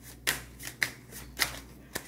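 A deck of tarot cards shuffled by hand, about five short, crisp card noises in two seconds.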